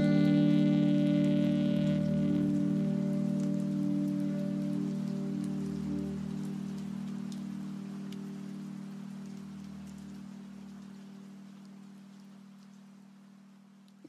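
The final held chord of a saxophone cover with its backing music, fading steadily away. The saxophone's bright upper tones drop off within the first couple of seconds, and the low notes of the chord linger and slowly die out.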